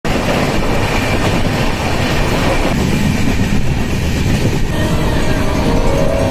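Indian Railways passenger train running on the track: a loud, steady rumble and rattle of the coaches' wheels and running gear.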